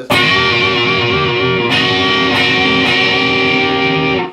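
Stratocaster-style electric guitar, tuned down a half step, played through an amp. A chord is struck and left to ring with a slight waver in pitch, freshly struck or changed about one and a half seconds in, and cut off just after the end.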